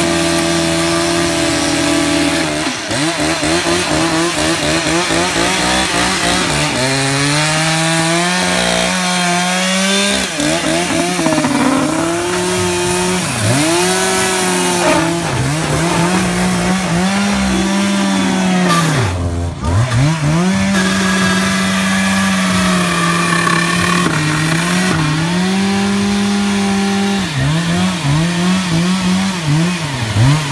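Two-stroke gas chainsaw running hard as it cuts through an upholstered chair's foam and frame. Its pitch sags again and again as the chain bogs in the cut, then picks back up, with one deep drop about two-thirds of the way through.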